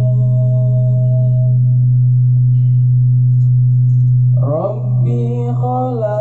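Male a cappella nasyid group singing shalawat: a steady low hummed bass drone runs under a held sung note that fades out in the first second or two. About four and a half seconds in, a voice slides up into the next sung phrase over the drone.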